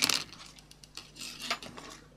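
A plastic tub's lid comes off with a sharp click at the start, then small stones shift and clink lightly against the plastic tub in a few scattered clicks.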